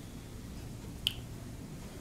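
Quiet room tone during a pause in speech, with a single short, sharp click about a second in.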